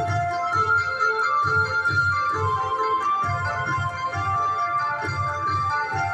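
Aristocrat 5 Dragons Rapid slot machine playing its free-games bonus music: an electronic keyboard-like tune over a steady low beat, about two beats a second.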